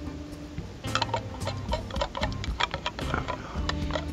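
Metal spoon scraping and clinking inside a tin can, a string of irregular sharp scrapes and taps starting about a second in, working stuck-on, scorched soup off the bottom of the can.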